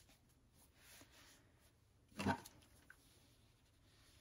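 Faint rustle of cotton fabric being folded and smoothed by hand on a pressing mat, mostly quiet room tone.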